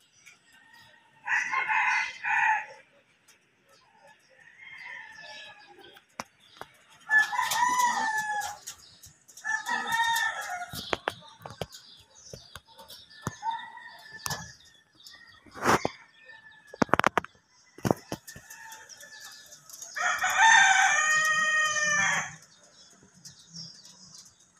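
A rooster crowing several times, the longest and loudest crow about twenty seconds in. A few sharp knocks are heard between the crows.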